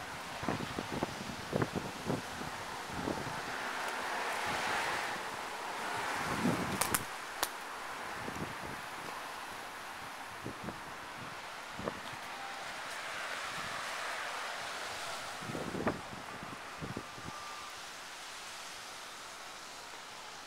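Outdoor street ambience: a steady rush of wind, and of wind on the microphone, swelling twice. Over it come scattered soft knocks from footsteps and from handling of the handheld camera, thickest in the first few seconds and again near three-quarters of the way through.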